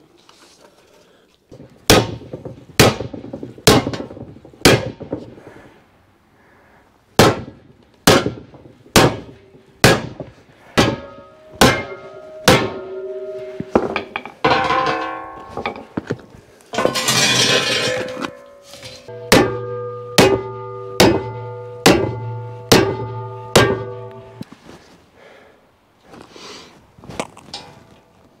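Hammer blows on a perforated steel plate propped on wooden blocks, about twenty strikes at roughly one a second, bending the plate to an angle. The plate rings with pitched tones after many of the blows, most clearly in the later run of strikes, and there is a short rush of noise about seventeen seconds in.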